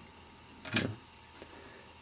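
Quiet room tone, broken by one short spoken "yeah" a little under a second in.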